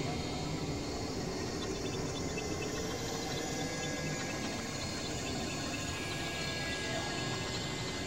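Experimental noise music: a dense, steady wash of layered, processed sound with drones. Faint high tones flicker through it, and a thin held tone sounds from about the middle until near the end.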